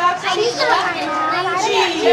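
Several people talking over one another, children's voices among them.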